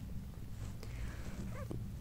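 Low steady hum of room tone, with a faint short pitched chirp near the end.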